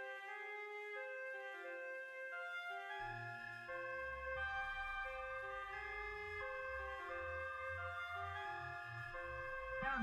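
Trap beat instrumental: a flute melody of held notes, joined about three seconds in by a deep bass line. Near the end a falling pitch sweep drops from high to very low.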